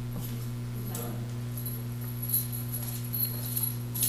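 Room tone with a steady low electrical hum and a few faint, scattered knocks.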